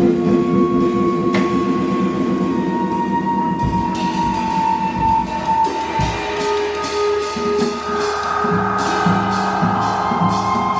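Free-improvised live music on keyboard and electronics, electric guitar and drums. Long held tones run over scattered drum hits and cymbal strokes, and a pulsing low figure comes in near the end.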